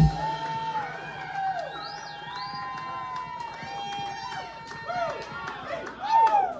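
Small audience cheering and whooping, with scattered claps and a whistle about two seconds in, as a live rock band's song ends. A low steady hum runs underneath.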